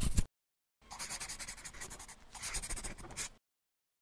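Scribbling sound effect of a pen on paper, scratchy and uneven, in two runs of about a second each, stopping abruptly a little past the halfway mark. At the very start come the last strokes of a quick drum-like rattle.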